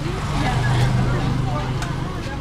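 A motor vehicle's engine running nearby as a steady low hum that eases slightly near the end, with faint voices of people around.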